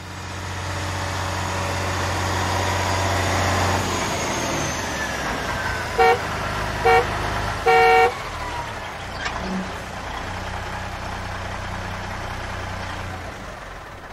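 Car sound effect: an engine running steadily, with the horn beeping three times about six seconds in, two short toots and then a longer one.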